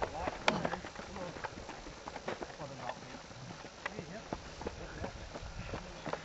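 Fell runners' footsteps on a dry dirt moorland path: scattered, irregular taps and scuffs, with faint distant voices.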